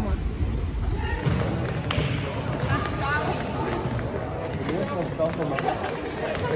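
Sports hall background during handball practice: scattered knocks of handballs bouncing on the hall floor over a constant mix of indistinct voices.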